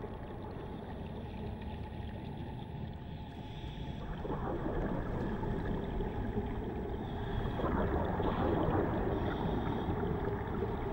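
Underwater ambience: a steady low rush of water with scuba divers' exhaled bubbles gurgling up from their regulators, in denser bursts about four and about seven and a half seconds in.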